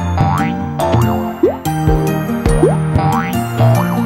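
Bouncy children's background music with cartoon sound effects laid over it. There are quick rising whistle-like glides and springy boings with low thuds, several times, as animated wheels and shock absorbers drop onto the ground.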